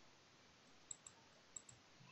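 Near silence broken by four faint clicks in two quick pairs, about a second in and again about half a second later: computer mouse clicks.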